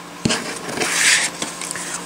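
A single sharp click, then a short rustle about a second in: cardstock and a paper punch being handled.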